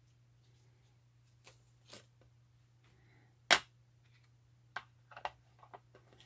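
Rubber stamps and an ink pad handled on a craft table: a few light taps and clicks, and one sharp knock about three and a half seconds in, as a stamp is inked and pressed or set down on the paper.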